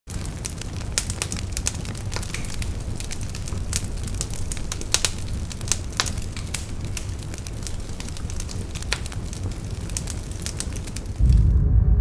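Fire crackling: a steady low rumble with scattered sharp crackles and pops. Near the end a loud, deep bass boom takes over.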